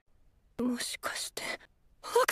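A person's voice speaking a few soft, quiet words, starting about half a second in and stopping before the end.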